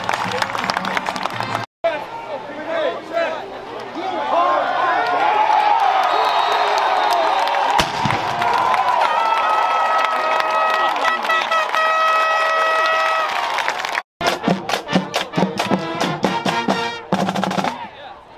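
Football stadium crowd cheering and shouting, with one deep boom just before eight seconds in as a cannon fires. Then a band's brass holds long notes, followed by a steady drum beat.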